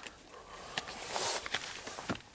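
Rustling and handling of a cardboard fish-and-chip box as chips are picked out and eaten, with a few small clicks.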